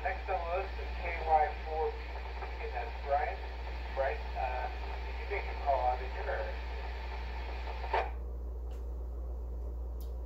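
A man's voice received over a 2-meter FM simplex link and heard through the transceiver's speaker. It sounds thin, with a steady hiss under it, and ends with a short burst of squelch noise about eight seconds in.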